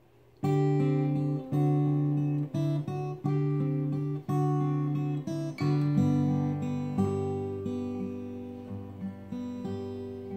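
Steel-string acoustic guitar playing the opening of a song: chords struck roughly once a second, each left to ring and fade, starting about half a second in and gradually softening toward the end.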